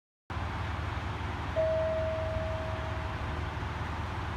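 A JR Kyushu KiHa 200 diesel railcar standing with its engine idling, a steady low rumble that cuts in after a moment of silence. About one and a half seconds in, a single clear tone sounds and fades away over under two seconds.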